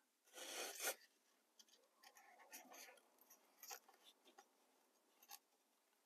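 Faint handling sounds of hands working a pair of LEDs on a strip of mounting tape: one short scratchy rustle under a second in, then scattered light rustles and small clicks.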